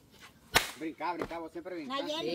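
A rubber sandal swung down and smacking once onto a person about half a second in: a single sharp slap. Voices react after it.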